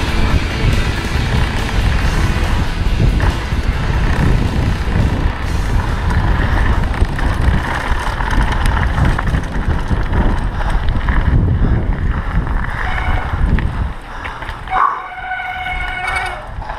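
Wind buffeting and tyre rumble of a mountain bike descending a rough gravel trail at speed, picked up by a helmet camera. Music plays underneath. The rumble drops away about two seconds before the end, and a short high-pitched call follows.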